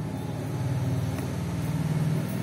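A steady low-pitched mechanical hum.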